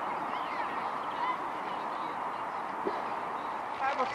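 Steady outdoor noise with a few faint, distant shouted calls.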